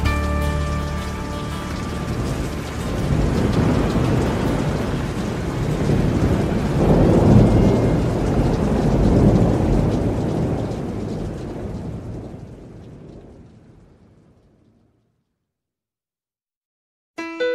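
Thunderstorm sound effect closing a country song: rain with rolling thunder that swells about halfway through, while the last band notes die away at the start. It fades out to silence near the end.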